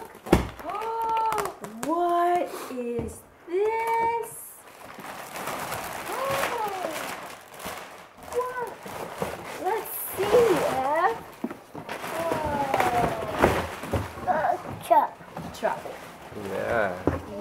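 Voices making wordless exclamations and a toddler's sounds, over the rustle of clear plastic wrap and cardboard as a children's ride-on toy car is lifted out of its box.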